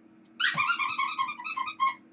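Battery-powered Christmas plush toy in a Santa hat playing a quick electronic tune of high, thin notes through its small speaker, starting about half a second in and stopping just before the end.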